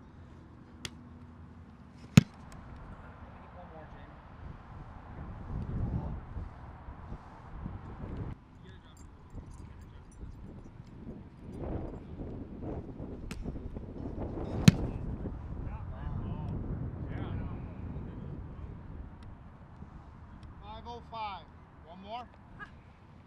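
A football punted twice: the punter's foot strikes the ball with a sharp smack about two seconds in and again about fifteen seconds in. Faint voices and outdoor noise in between.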